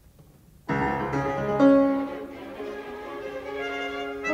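Symphony orchestra with solo piano entering suddenly out of silence about two-thirds of a second in, strings prominent, then playing on. The loudest moment comes just under two seconds in.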